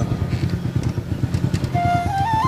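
A small engine running steadily, a low, fast, even pulsing rumble. A single high flute note comes in just before the end.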